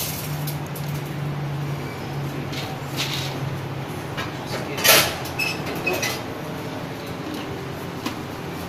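Scattered clicks and knocks from someone handling a countertop popcorn machine, with the loudest knock about five seconds in. A low steady hum runs under the first half and stops about four seconds in.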